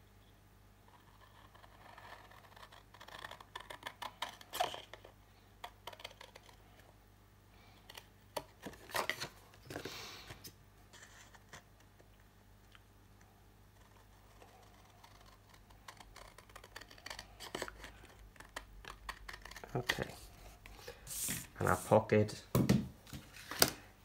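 Large scissors cutting through cardstock in runs of crisp snips, in several bursts with pauses between.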